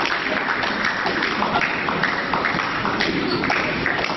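An audience applauding steadily.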